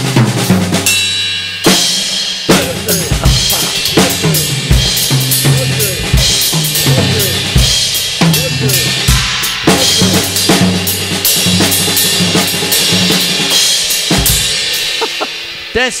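Acoustic drum kit played in a reggae groove, a steady bass-drum pattern under paradiddle-based sticking around the snare and toms, with low sustained tones beneath the hits. The playing stops shortly before the end.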